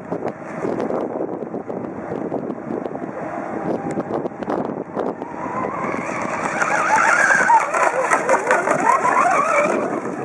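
Radio-controlled outrigger speedboat running at speed, its motor whine wavering up and down in pitch as the hull skips over choppy water. The whine grows louder from about halfway through as the boat passes closer, then eases off near the end, with wind buffeting the microphone.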